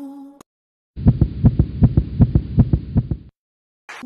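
Fast heartbeat sound effect: low thumps about five a second for just over two seconds, starting and stopping abruptly.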